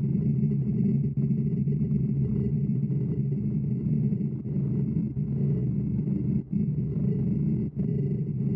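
Laguna Revo 18|36 wood lathe spinning a large pignut hickory bowl blank while a bowl gouge cuts the inside: a steady low rumble with a faint even whine above it, dropping out briefly a few times as the cut lets up.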